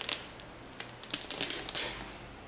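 Hook-and-loop (Velcro) Jumpman patch being peeled off the tongue of an Air Jordan 4 Undefeated sneaker: a crackly, rasping rip starting about a second in and lasting most of a second.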